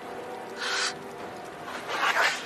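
Two short breathy sounds from a person's mouth as blood is drunk from an offered arm, the first a little past half a second in and the second near the end, over a sustained low film-score drone.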